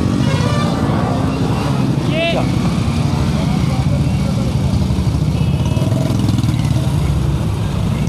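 Motorcycle engines running as riders work their bikes through deep mud on a broken road, a steady low rumble. A person's voice calls out briefly about two seconds in.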